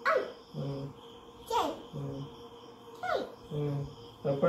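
An animal calling over and over, three times, about every one and a half seconds: each call is a sharp cry falling steeply in pitch, followed by a shorter, lower sound.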